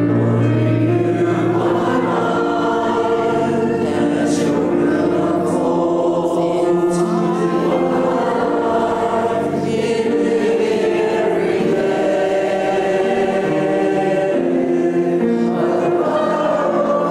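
A church congregation singing a worship song together, with keyboard accompaniment.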